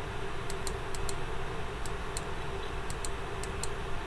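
Light, irregular clicks, often in pairs, from a stylus tapping on a pen tablet while handwriting, over a steady background hiss and hum.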